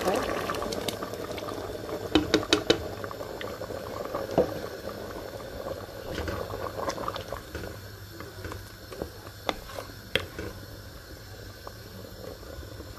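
Blended tomato pouring into a pot of simmering beans, then a wooden spoon stirring the stew against the metal pressure-cooker pot, with a quick run of sharp knocks about two seconds in and a few single knocks later, over the bubbling of the simmering liquid.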